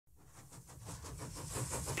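Steam hiss with a low rumble underneath, growing steadily louder.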